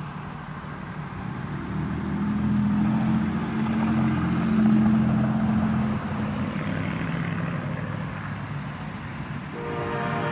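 Deep, steady engine hum of a large diesel vehicle, swelling over a few seconds and then easing off. Near the end a higher, steady tone starts abruptly.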